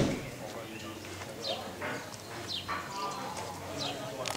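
Voices of people talking, with short high bird chirps that fall in pitch every second or so, and a single low bump at the very start.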